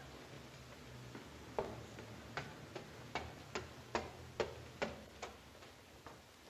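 Footsteps on wooden stairs, starting about a second and a half in and going on at a quick, even pace of about two and a half steps a second, over a low steady hum.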